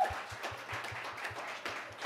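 Audience applauding, easing off toward the end.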